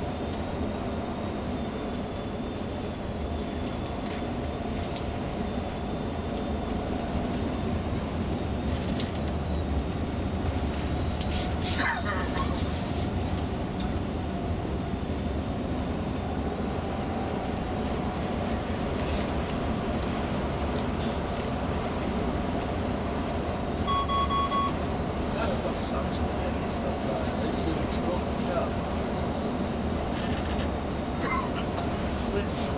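Tour coach driving at road speed, its engine and tyres heard from inside the cabin as a steady low rumble. A short electronic beep sounds about three-quarters of the way through.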